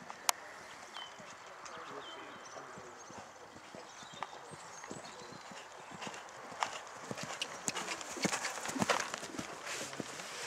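Hoofbeats of a young horse cantering on a sand arena surface, growing louder over the last few seconds as it comes close. Two sharp clicks sound right at the start.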